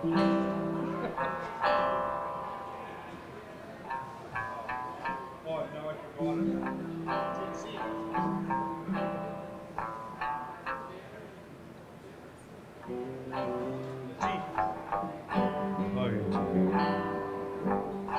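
Small country band playing a slow instrumental passage: picked guitar notes ring out over sustained bass notes, thinning out in the middle and filling out again near the end.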